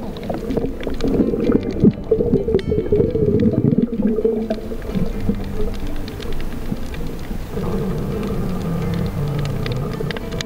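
Muffled underwater sound picked up through an action camera's waterproof housing, with background music playing over it.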